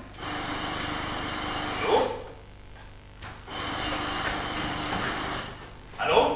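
Telephone bell ringing twice, each ring about two seconds long with a pause between them. A short loud cry from a voice comes at the end of the first ring.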